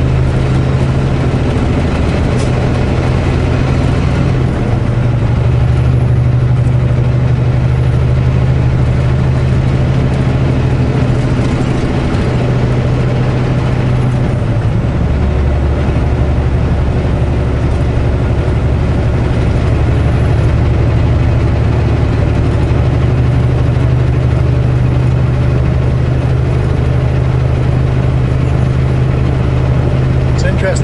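Semi-truck's diesel engine heard from inside the cab while driving, a steady low drone with road noise. Its low hum changes level every few seconds.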